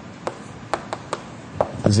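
Chalk striking and tapping on a blackboard as a formula is written: a string of short, sharp ticks at uneven intervals.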